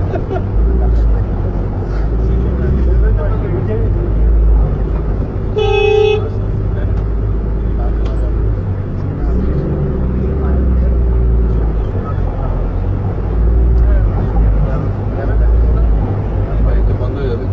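Steady low rumble of a car driving through a flooded street, heard from inside the cabin. A vehicle horn gives one short toot about six seconds in.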